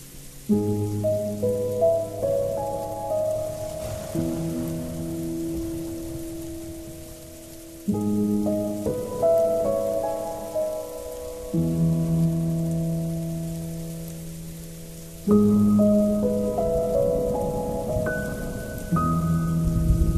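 Slow, melancholy ambient music: soft piano chords struck about every four seconds, each fading away, with a few higher notes picked out above them. A steady hiss of rain runs underneath.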